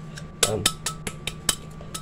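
A series of sharp taps and clinks on a blender jar, roughly three a second and uneven, as powdered sugar is knocked loose from its sides.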